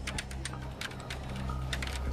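Fast typing on a computer keyboard: a quick, irregular run of key clicks over a low steady hum.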